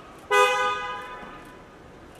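A single short car horn beep about a third of a second in, trailing off over about a second.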